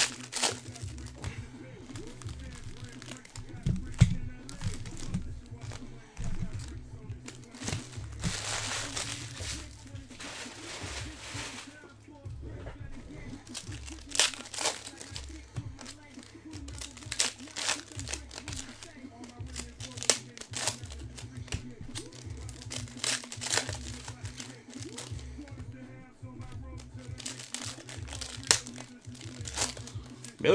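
Foil wrappers of baseball card packs crinkling and tearing as the packs are ripped open. Scattered sharp clicks and rustles come from the cards being handled, with a longer stretch of crinkling about eight to eleven seconds in.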